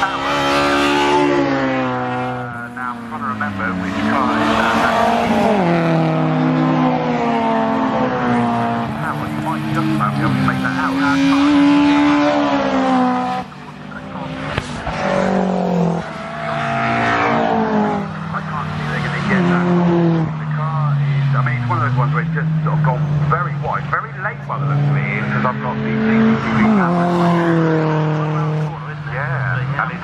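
Several racing cars' engines running hard as the cars pass through a corner, the engine notes rising and falling with throttle and gear changes, with several cars overlapping.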